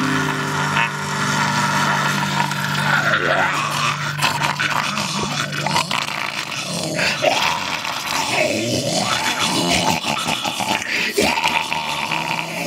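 A man growling and shrieking without words in a black-metal vocal style, over an acoustic guitar chord that rings for about the first half and then dies away.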